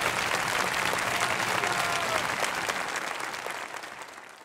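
Large audience applauding, a dense crowd of claps that fades out near the end.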